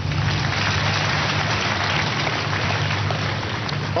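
Congregation applauding, a dense, even clatter of many hands, over a steady low hum.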